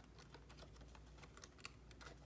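Faint handling sounds of paper banknotes and a clear plastic cash envelope: a few scattered soft clicks and rustles over low room hum.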